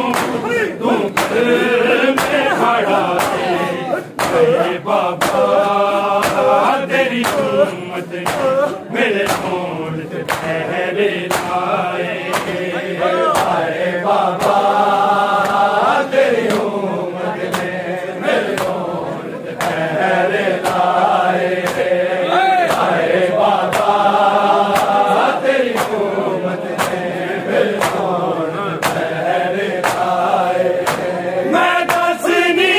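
A noha, a Shia lament, sung in long drawn-out phrases by a male reciter with a crowd of men chanting along. Steady, evenly spaced slaps of hands on bare chests (matam) keep the beat throughout.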